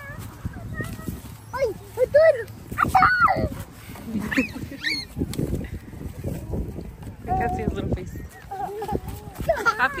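Small children's wordless voices, babbling and calling out in short bursts, with farm-animal calls mixed in.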